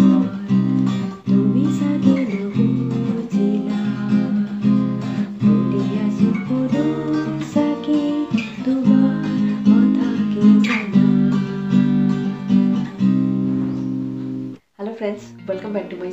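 Steel-string acoustic guitar strummed in a steady rhythm of chords while a woman sings along. The playing cuts off suddenly near the end.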